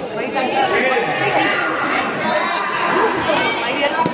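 Indistinct chatter of many overlapping voices echoing in a large sports hall, with a sharp click of a racket striking a shuttlecock near the end.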